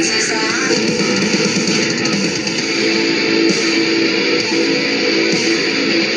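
Heavy metal music with electric guitar playing, loud and continuous.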